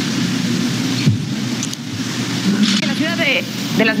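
Steady rushing background noise, like rain or street hiss, from a television news clip being played back, with a few faint words coming in about two and a half seconds in.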